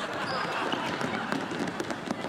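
A basketball bouncing on a hardwood gym floor, several sharp knocks over a steady wash of background noise.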